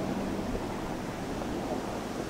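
Mercedes Sprinter van driving slowly away across a gravel clearing, its engine and tyres heard under a steady rush of wind on the microphone.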